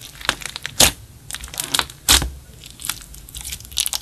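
Hands pressing and poking into a large, glossy clear slime mixed with makeup and glitter: a run of sticky crackles and small pops, the two loudest about one and two seconds in.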